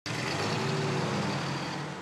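1962 Chevrolet Corvette's 327 V8 engine running steadily as the car rolls along at low speed.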